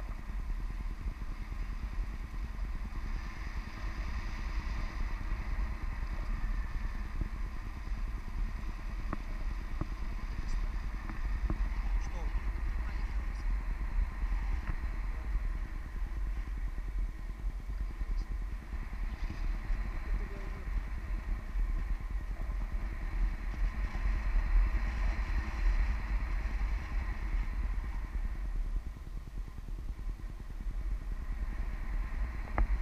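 Wind rushing over an action camera's microphone in paragliding flight: a steady low rumble that buffets unevenly, loudest about three quarters of the way through.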